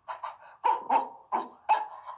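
Short bark-like animal calls, about four in quick succession, made by a voice imitating a walrus.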